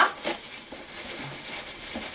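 Faint rustling of shredded paper filler as fingers dig into a cardboard advent calendar compartment.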